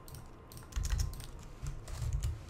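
Typing on a computer keyboard: a scattered run of key clicks, joined by dull low thuds from about three quarters of a second in.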